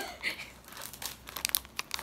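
Clear plastic jewellery bags crinkling as they are handled, with a cluster of sharp crackles near the end.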